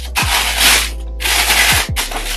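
Packaging being rustled in two bursts of under a second each, over background music with a steady beat.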